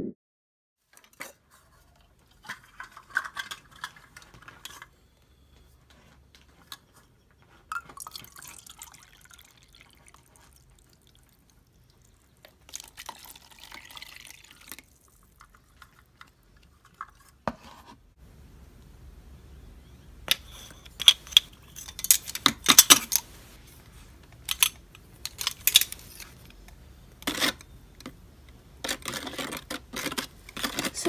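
Liquid being poured and stirred in a container, with a spoon clicking and knocking against its sides, the knocks growing busier in the second half.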